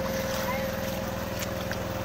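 A small engine running steadily with an even, unchanging hum.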